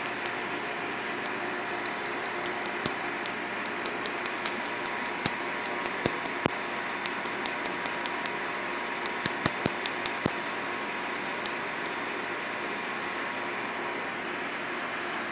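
Tattoo-removal laser firing pulses into the skin of the face: a run of sharp snapping clicks, irregular at about two to four a second, with each click one laser shot. The clicks stop a little after two-thirds of the way through, with one last click after that, and a steady machine hum runs underneath.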